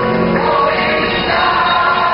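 Music with a group of voices singing together.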